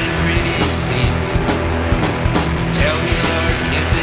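Instrumental passage of a rock song: guitar and bass over drums keeping a steady beat.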